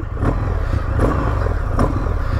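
Indian FTR 1200's V-twin engine running on the move through its Akrapovic exhaust, a low, steady farting burble.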